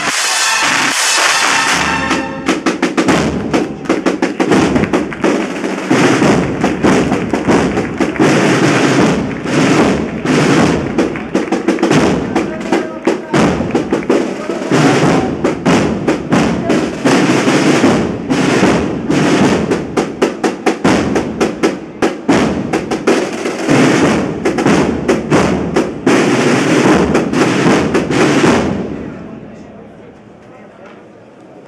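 A processional band's brass chord dies away in the first two seconds, then the drum section plays on alone: snare drums and bass drum in a dense, rapid beat. It fades out near the end.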